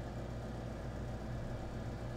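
Steady low hum of room tone.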